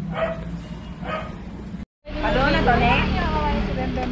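A young girl giving two short yelping cries. After a brief break, several overlapping voices chatter.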